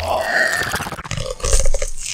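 A person's wordless mouth and throat sound.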